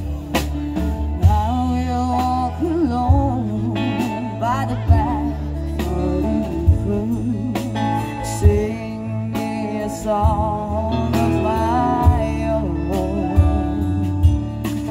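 Live rock band playing through a stage PA: a woman singing lead over electric guitars, bass, keyboard and drums, with regular drum hits under a steady bass line.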